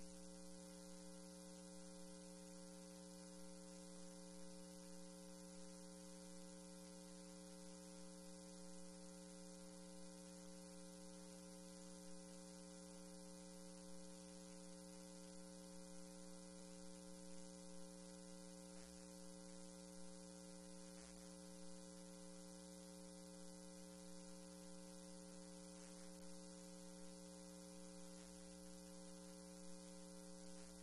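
Near silence: a steady low electrical hum with faint hiss on the audio line, unchanging throughout.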